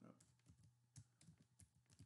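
Faint, scattered keystrokes on a computer keyboard: a handful of soft, separate taps as a short entry is typed, over a faint steady low hum.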